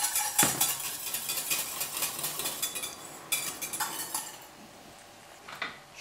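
Metal kitchen utensils and pans clinking and scraping in a busy run of small knocks, which thins out and quietens in the last couple of seconds.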